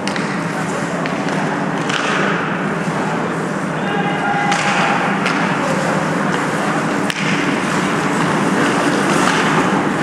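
Hockey game sounds on a rink: skates scraping and sticks and puck clattering under a steady wash of rink noise, with a brief call about four seconds in and one sharp knock about seven seconds in.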